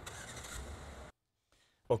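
Steady outdoor vehicle and traffic noise at a gas station, which cuts off abruptly about a second in, leaving dead silence.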